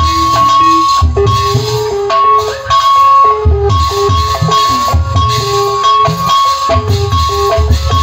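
Live Sundanese jaipongan music from a gamelan ensemble, instrumental at this point: deep drum strokes in a driving rhythm under a melody that moves in short steps, with a high tone held throughout.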